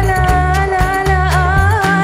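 Live band playing Arabic-Egyptian music: a long held melody note that wavers and bends near the end, over drum kit strokes and a steady bass line.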